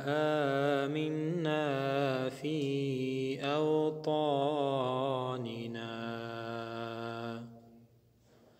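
A man chanting an Arabic dua in long, drawn-out melodic phrases with ornamented pitch turns, fading out near the end.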